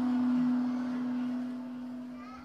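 The last held note of a Quran recitation dying away: one steady tone left ringing in the sound system's echo after the reciter stops, fading slowly.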